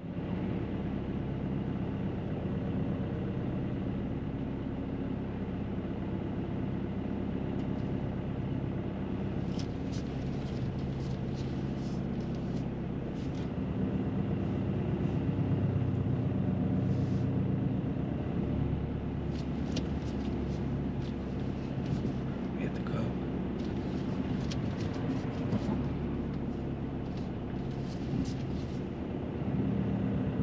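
Car engine running at low revs, heard from inside the cabin as a steady low hum while the car creeps slowly. Faint scattered clicks come in from about a third of the way through.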